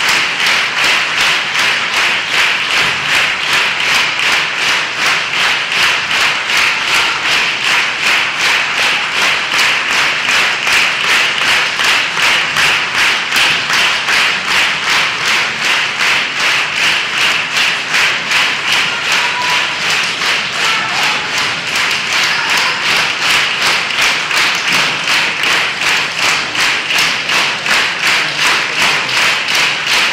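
Concert audience applauding, clapping together in a steady rhythm of about two to three claps a second.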